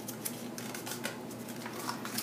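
Cardstock rustling and crackling as it is handled and folded, a quick run of small clicks and crackles as the stiff paper flexes and slides.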